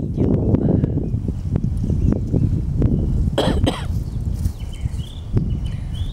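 Strong wind buffeting the microphone with a steady low rumble, with a short harsh burst about three and a half seconds in.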